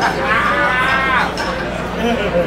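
A long whooping yell from one voice, rising and then falling in pitch over about a second, over crowd noise.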